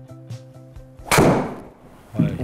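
Callaway Rogue driver striking a golf ball: one loud, sharp crack about a second in, with a short echoing tail in the indoor hitting bay. Background music with a beat fades out just before the strike.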